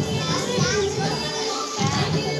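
Music playing with many children's voices chattering and calling over it.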